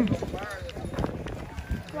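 Indistinct voices of people talking, with a few light knocks.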